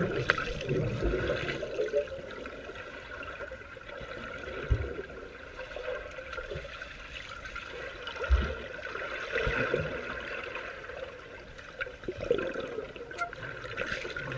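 Swimming-pool water heard underwater: a steady muffled rushing and bubbling as swimmers move through the water, with two brief low thumps about five and eight seconds in.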